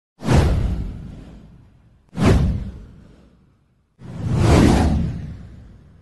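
Three whoosh sound effects from an animated title-card intro, each with a deep bass body. The first two hit suddenly and fade out over about a second and a half; the third, about four seconds in, swells up before fading away.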